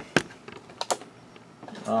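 A few sharp clicks and taps from objects being handled: one shortly after the start and a pair about a second in, with quiet handling noise between. A man's voice begins near the end.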